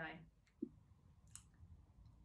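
Near silence: faint room tone with a couple of small clicks, one about half a second in and one past the middle.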